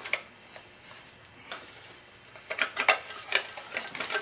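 Motorcycle roller drive chain clinking as it is fed by hand onto the rear sprocket. A few scattered metallic clicks come first, then a quicker run of clicks from about two and a half seconds in.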